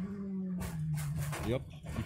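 Onboard sound of a prototype race car that has lost its brakes: a steady engine tone drops in pitch about half a second in, followed by several short bursts of harsh noise as the car heads into the crash.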